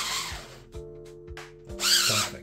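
The telescoping blade segments and twist mechanism of a 3D-printed plastic retractable lightsaber sliding and rubbing, with a rasping stretch at the start and another near the end and a few light clicks between. Background music plays under it.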